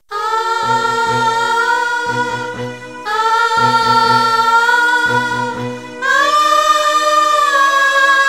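Soundtrack song: a singing voice holds long, slowly bending notes in three phrases over a low pulsing accompaniment that drops out for the last phrase.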